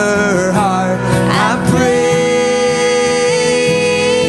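A live song: singing with acoustic guitar accompaniment, with one long held sung note through the second half.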